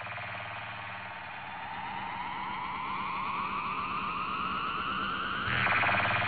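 Logo-reveal sound effect: a swelling riser whose tone climbs steadily for about five seconds, over a low steady hum, then a louder hit near the end as the emblem lands, starting to fade.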